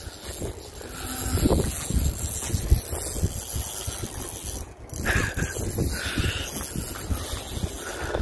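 Spinning reel being cranked as a hooked rainbow trout is reeled in, with wind buffeting the microphone.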